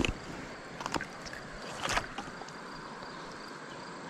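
Steady rush of shallow river water, with a few short splashes and knocks as a smallmouth bass is lifted out of a landing net and handled, about one a second in the first two seconds.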